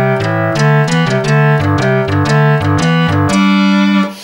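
Artisan Ottava synthesizer playing its 'Drawbar hit' patch: a quick run of notes over a lower line, each note opening with a little snap of noise from the synth's noise source. The last note is held for about half a second at the end.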